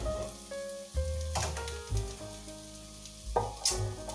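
Food sizzling in a frying pan on the stove, with a couple of sharp clicks of a plastic spatula against the pan, under a soft background melody.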